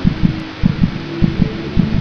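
A heartbeat-like double thump repeats about every 0.6 s, roughly a hundred beats a minute, over a steady low droning tone in the soundtrack.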